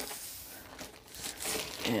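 Soft crinkling and rustling of kit packaging as items are handled and lifted out, with a short laugh at the very end.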